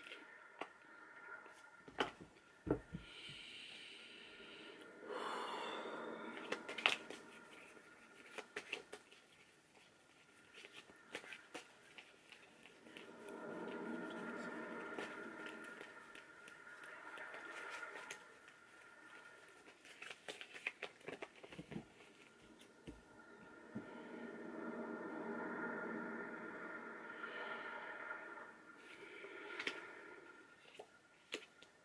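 A deck of tarot cards being shuffled by hand: three soft shuffling spells of a few seconds each, with scattered light clicks and taps of the cards in between.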